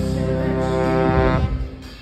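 Trombone holding one long brassy note with the live band's horn section, cutting off about a second and a half in, with the band's low end carrying on beneath.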